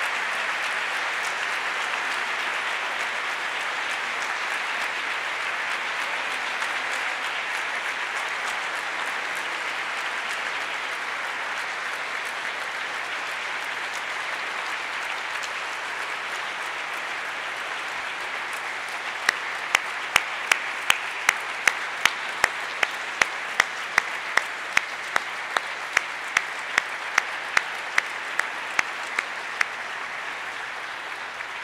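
Large audience applauding, a dense, steady clapping that slowly thins. From about two-thirds of the way in, one person's sharp claps close to the microphone stand out over it at about two to three a second.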